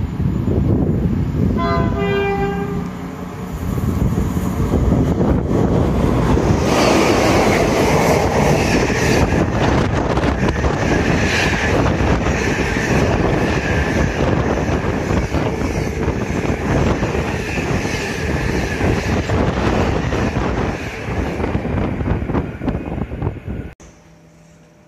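A freight train sounds its horn briefly about a second and a half in as it approaches, then runs past close by, hauling empty container flat wagons: a long, loud, steady run of wheel and wagon noise that cuts off abruptly just before the end.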